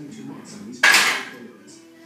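Loaded barbell set back onto the hooks of a steel squat rack: a single loud metal clank a little under a second in, ringing briefly.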